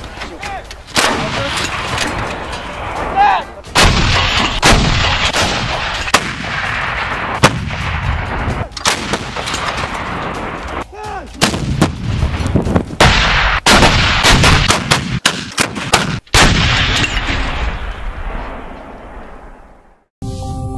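Towed artillery gun firing again and again: a series of sharp, loud shots, each followed by a long rolling echo, fading out near the end.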